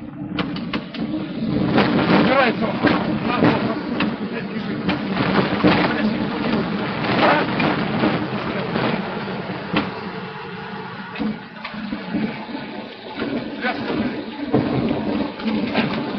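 Loud airliner cabin noise on the runway: a steady engine drone with rattling and people's voices mixed in.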